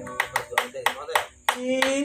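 About eight sharp hand claps in quick, fairly regular succession, with a man's voice between them.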